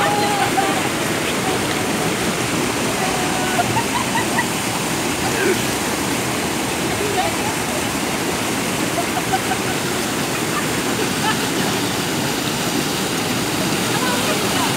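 Rain-swollen water pouring over a concrete check dam's spillway and churning at its foot: a loud, steady rush of falling water.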